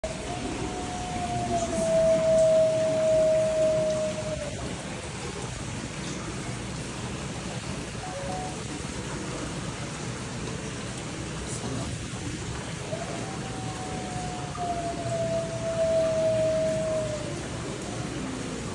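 Arctic wolf howling: two long, steady howls of about four seconds each, the pitch sliding gently down at the end of each, with a faint short call between them about eight seconds in.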